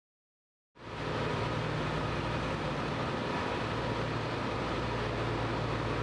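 Steady low hum and rumble of shinkansen cars being towed slowly along a station track by a rail towing vehicle, starting just under a second in.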